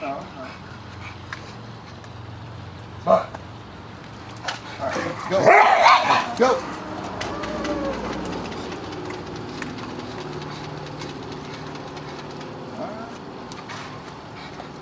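Dogs barking and yipping in play, with a single sharp bark about three seconds in and a louder flurry of barks and yelps near the middle. It is followed by a long, drawn-out whine.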